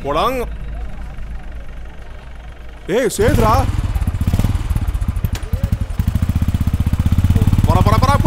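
Motorcycle engine running with a fast, even low thumping that comes in about three seconds in and grows louder, over a low vehicle rumble. Two short shouts are heard, at the start and again when the engine sound comes in.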